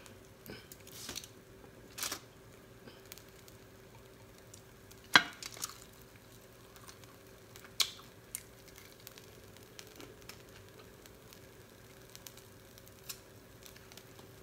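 Crispy fried chicken wings being bitten and chewed: scattered short crunches and clicks, the loudest about five seconds in, over a faint steady hum.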